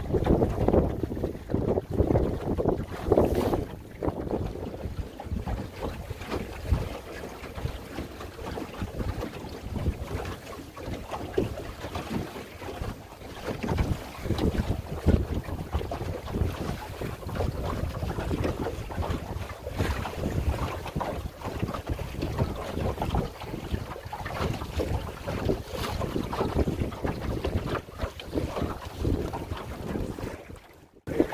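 Wind gusting over the microphone and water washing along the hull of a small open sailboat, a Drascombe Lugger, sailing through choppy water. The gusts are strongest in the first few seconds.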